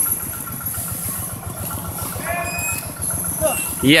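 An engine running steadily with a rapid low pulse.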